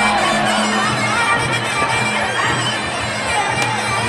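Traditional Muay Thai ring music (sarama): the reedy, held tone of a pi java oboe over drums, played live during the bout, with the crowd underneath.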